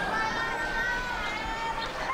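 Indistinct distant voices over a steady outdoor background noise, with no clear words.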